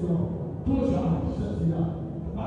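A man's voice, speaking loudly into a handheld microphone and amplified through the hall's sound system.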